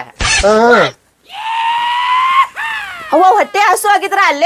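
A short loud spoken burst, then after a brief gap a long, high-pitched shouted cry held for over a second and rising slightly in pitch, which trails off in falling slides before ordinary talk resumes.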